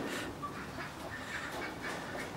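A few faint, short animal calls over a low background.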